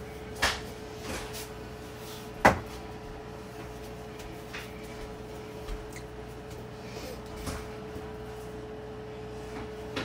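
A few sharp knocks and clatters, the loudest about two and a half seconds in, over a steady hum.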